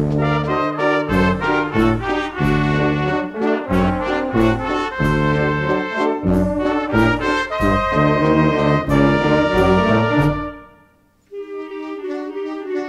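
Brass-band music with a steady bass beat. It breaks off for a moment about ten and a half seconds in and comes back softer near the end.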